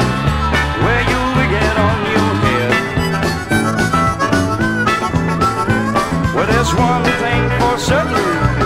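Instrumental break of a 1971 country single played from a 45 rpm record: a lead instrument plays bending, sliding notes over a steady bass line and rhythm section.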